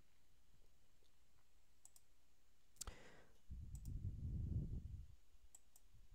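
A few faint computer mouse clicks, a close pair near the end, as a file is picked in a file-open dialog. A soft low rumble runs for about a second and a half in the middle.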